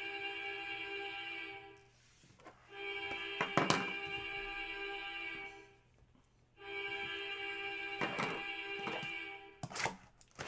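A repeating electronic tone, several steady pitches sounding together like a ringtone, heard three times for about three seconds each with short gaps between. A few sharp knocks come in the middle and near the end, the last as a card box is handled on the table.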